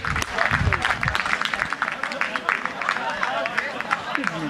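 Scattered applause from a small crowd of football spectators, with men's voices talking and calling among the clapping.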